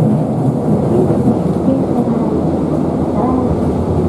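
Streetcar running, heard from inside the car: a steady low rumble of its motors and of its wheels on the rails.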